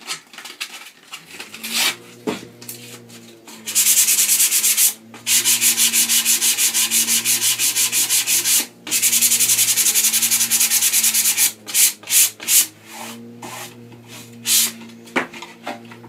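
Sandpaper rubbed by hand back and forth over decoupage paper on a painted wooden drawer front, distressing the paper so its pattern fades and looks aged. Fast strokes, several a second, start a few seconds in and run in three long spells with short breaks, then give way to a few separate strokes near the end.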